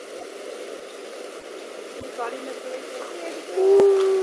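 Faint background hiss with a few quiet voice fragments, then a short, steady, hoot-like held voice near the end.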